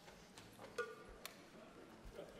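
Near silence: faint hall room tone, with one short, faint pitched note a little under a second in and a sharp click just after it.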